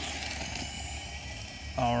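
Steady outdoor urban background noise, a low rumble under a hiss, starting abruptly as the clip begins. A man's voice says "Alright" near the end.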